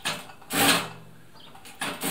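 Siruba DL7200 industrial needle-feed lockstitch machine sewing in short stop-start runs: a brief run about half a second in and another starting near the end. Each time it stops, the automatic needle positioning parks the needle in the down position.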